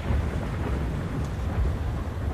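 A steady low rumble, like a dark ambient thunder-style background bed, with a faint hiss above it.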